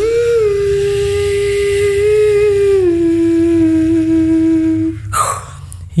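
Beatboxer humming one long held note over a low buzzing bass drone; the note steps down in pitch about three seconds in. Near the end a short sharp hiss cuts in.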